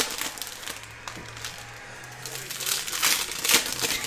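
Plastic foil wrappers of trading-card packs crinkling in irregular bursts as packs are handled and opened, louder in the second half.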